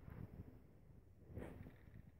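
Near silence: faint outdoor background with a low rumble, and one faint, brief sound about one and a half seconds in.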